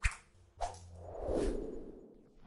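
Animation whoosh sound effects for fast motion: two quick swishes, then a longer whoosh that swells and fades.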